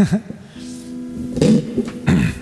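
The tail of a laugh, then acoustic guitar strings left ringing with a few steady low notes, and a brief vocal sound about one and a half seconds in.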